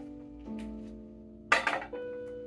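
Piano playing slow sustained chords, with a new chord struck about half a second in and another near the end. A brief, loud burst of noise cuts across the chords about one and a half seconds in.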